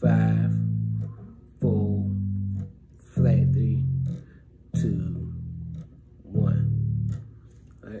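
Electric bass guitar played one note at a time: five plucked notes about a second and a half apart, each ringing for about a second before being damped. They descend the D melodic minor scale, slow practice-tempo playing.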